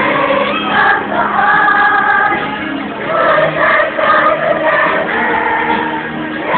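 A group of voices singing together with music, several parts holding long notes at once.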